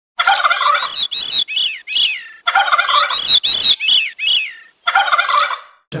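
Bird calls in three bouts, each a rough rattling burst followed by a few falling notes, with short gaps between the bouts.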